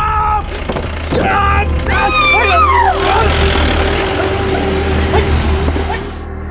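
A car running with a steady low engine hum, with high shouts or screams over it about one and two seconds in.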